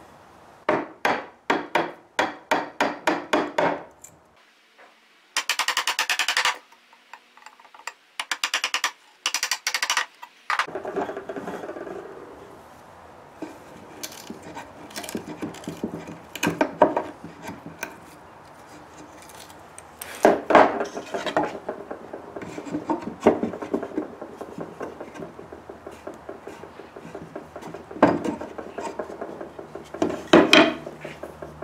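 Wood chisel paring out a saw-cut slot in a turned chair leg, shaving the undercut wood down to a scribe line. It starts with a run of about ten short quick cutting strokes, then longer rasping shaving strokes, then softer scraping with occasional knocks of wood against wood.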